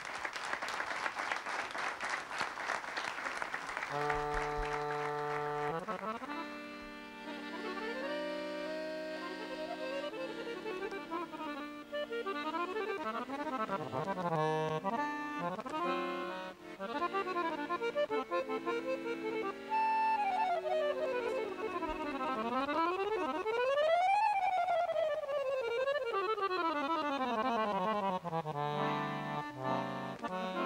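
Accordion playing a Romanian folk arrangement (prelucrare folclorică). Held chords come in about four seconds in, then quick melodic figures, and in the second half rapid scale runs sweep up and down.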